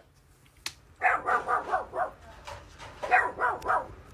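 Dog giving two quick runs of yipping barks, each about a second long, about one and three seconds in.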